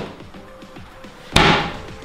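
A kitchen freezer drawer pushed shut with a single slam about a second and a half in, over quiet background music.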